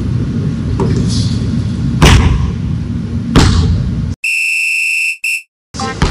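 Two loud thuds of a basketball landing after a missed shot, over a heavy low rumble from faulty recording equipment. About four seconds in comes a quiz-show style wrong-answer buzzer sound effect, a steady electronic buzz with a short second blip, marking the miss.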